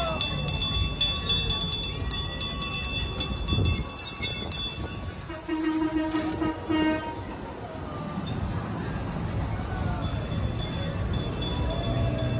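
Trackless tourist road train going by, sounding its train-style horn in two short toots about halfway through. Quick ticking runs through the first few seconds and comes back near the end.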